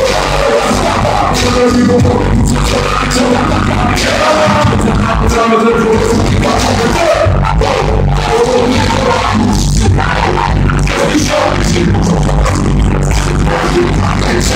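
Live hip hop played loud through a venue's sound system: a beat with a heavy, steady bass line and a voice rapping into a microphone over it.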